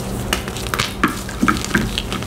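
Blocks of gym chalk being squeezed and broken in gloved hands, crumbling with a quick run of dry crunches and crackles that bunch up in the second half.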